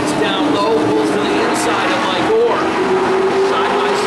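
A pack of Pro Stock race cars running together at speed on a short oval, a steady engine drone whose pitch shifts up and down as the field goes around.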